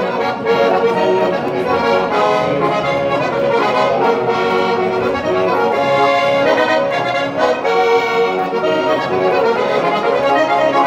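A 1958 Palma Alparizio organetto (diatonic button accordion) in F# plays a traditional dance tune without a break.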